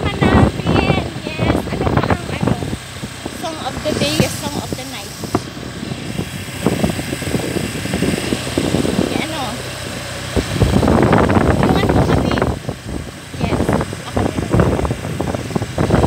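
A woman's voice in snatches, words not made out, over steady road and vehicle noise.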